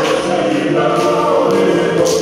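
A group of voices singing a Tongan song together in harmony, with long held notes.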